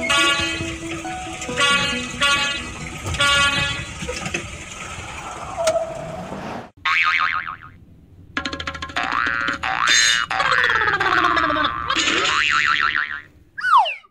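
Cheerful background music that cuts off about halfway, followed by cartoon sound effects: springy boings and sliding tones that rise and fall in pitch.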